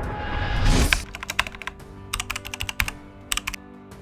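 A swelling rush of noise over about the first second, then a run of quick keyboard-typing clicks in bursts, as a sound effect for on-screen text, over faint steady background music.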